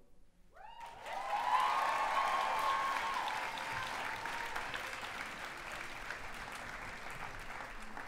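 Theatre audience clapping and cheering, breaking out about a second in after a brief hush, with whoops and shouts loudest at first and the clapping running on steadily.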